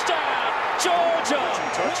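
Stadium crowd noise from a football game broadcast: a steady crowd din with raised voices and shouts over it, and a few sharp clicks.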